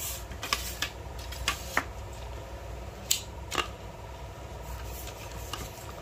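Handling noise from a carbon surf fishing rod being gripped and turned in the hands: a few short, sharp clicks and rubs, most of them in the first few seconds, over a faint steady low hum.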